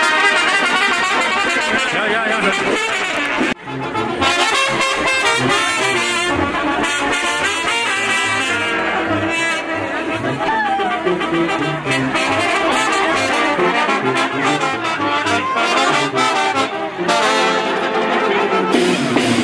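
Brass band music, trumpets and trombones playing a lively tune, with a brief break about three and a half seconds in.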